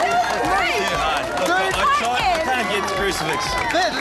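A large crowd of children shouting and calling out together, with many high voices overlapping.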